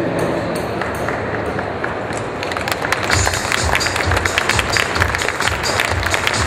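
Stage music playing in a noisy hall. A steady bass beat, about two a second, comes in about halfway through, with crisp high ticks over it.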